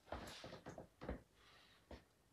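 Near silence: a quiet room with a few faint, short taps.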